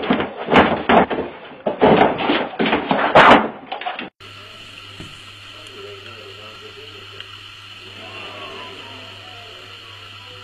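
A dog scrabbling and thrashing in a hard plastic dog bed: a rapid, loud run of knocks, thumps and scuffles for about four seconds. It then gives way suddenly to a steady hiss with a low hum.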